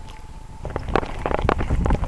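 Wind buffeting a handheld camera's microphone outdoors, a low rumble with a rapid run of irregular knocks and crackles that starts about half a second in.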